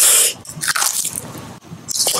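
Close-miked ASMR eating sounds: a loud crisp crackle right at the start, then softer wet mouth sounds and small bites.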